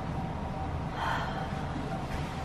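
A woman's breath, a soft audible exhale about a second in, over a low steady room hum.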